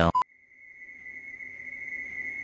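A single steady high-pitched tone fading in after a moment of silence and slowly growing louder.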